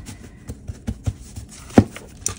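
Craft foam sheets being handled and set down on a desk: a few soft knocks and taps, the loudest near the end.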